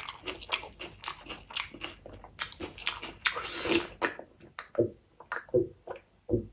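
Close-miked chewing of fish curry and rice eaten by hand, full of wet mouth clicks and lip smacks, thinning out near the end.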